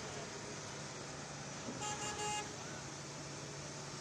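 Street traffic with a vehicle horn giving a short double toot about two seconds in, over a steady low engine hum and road noise.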